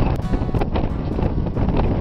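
Wind rumbling on the camera microphone over background music.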